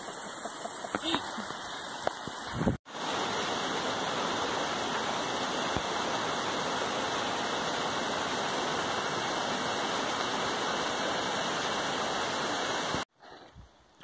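Steady rush of a small mountain waterfall splashing down rock into a shallow pool. It begins abruptly about three seconds in and cuts off suddenly about a second before the end.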